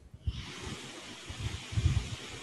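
A steady hiss, with a few faint low knocks beneath it.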